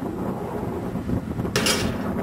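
Wind buffeting a camcorder microphone: a steady low rumble, with a brief sharper hiss of a gust about one and a half seconds in.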